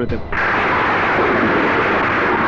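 Loud, steady rushing noise from a film soundtrack effect, starting abruptly just after the last spoken word and holding evenly without any pitch.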